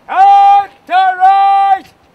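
A drill instructor shouting drawn-out parade commands over a loudspeaker: a short held call, then a longer call in two parts.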